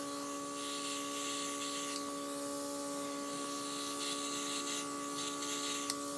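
Makeup airbrush compressor humming steadily while the airbrush gun sprays with a soft airy hiss that comes and goes.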